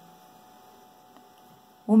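Faint steady electrical hum with light room hiss and no other activity. A single tiny tick comes about a second in, and a woman's voice starts just before the end.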